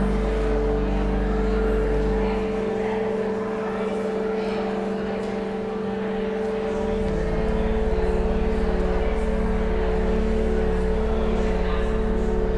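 Pipe organ holding sustained chords. The deep bass note drops out about two seconds in, and a new low bass note comes in about seven seconds in.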